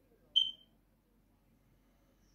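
A single short, high-pitched electronic beep about a third of a second in, fading quickly.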